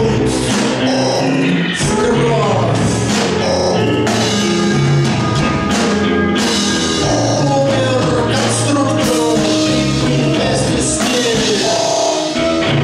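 A live band playing loud, steady music: bowed violin lines over electric guitar and drums.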